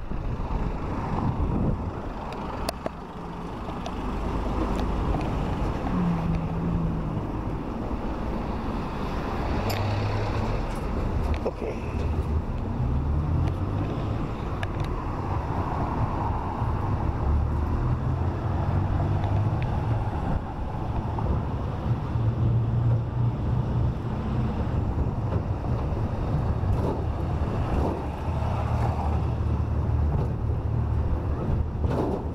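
Motor vehicle riding along a city road: the engine's low hum rises and falls in pitch as it speeds up and slows, over steady road and wind noise.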